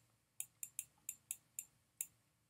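Stylus tapping on a pen tablet's writing surface while writing: about seven faint, short clicks spread over two seconds.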